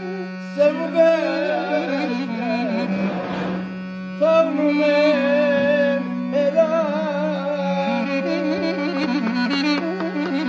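Armenian duduk playing a slow, ornamented melody with sliding, wavering notes over a steady low drone note.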